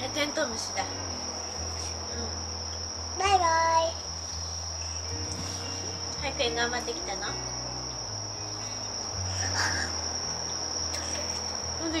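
Insects trilling: one steady, high-pitched trill that runs without a break. About three seconds in, a toddler gives a short, loud sing-song call.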